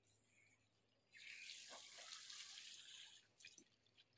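Water from a garden hose splashing into a small inflatable paddling pool, faint at first, then a louder rush of splashing for about two seconds in the middle before it drops back.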